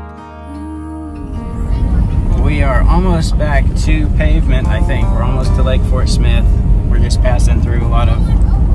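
Music ends about a second in, giving way to a loud, steady low rumble of road and engine noise inside a moving vehicle's cabin on an unpaved road, with voices over it.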